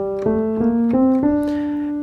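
Piano sound from a MIDI controller keyboard playing single notes one after another, stepping up the opening of a G harmonic minor scale. Five notes rise by steps, each ringing on into the next, and the last is held.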